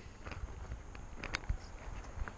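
Footsteps on dry dirt while a plastic motorcycle top case is carried, with a few light clicks and a soft knock about one and a half seconds in.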